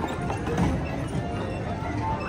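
A draft horse's shod hooves clip-clopping at a walk on brick pavement as it pulls a horse-drawn streetcar past, with background music playing.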